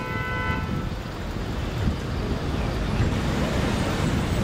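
A car horn holding one steady note, cutting off about a second in, over a steady low rumble of street noise.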